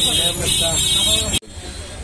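Voices talking over a loud, busy background of road traffic noise, which cuts off abruptly about one and a half seconds in, leaving a much quieter background.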